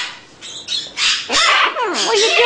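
Baby macaw squawking: a few harsh squawks, then pitched calls that bend up and down.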